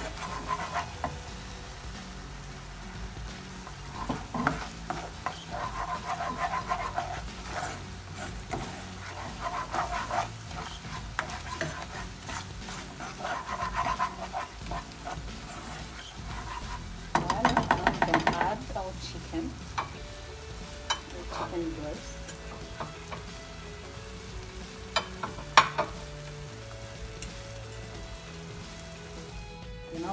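A spatula stirring and scraping a thick cream sauce around a nonstick frying pan in bursts of strokes, the loudest run about two-thirds of the way through, while the sauce simmers and sizzles. A couple of sharp clicks sound near the end.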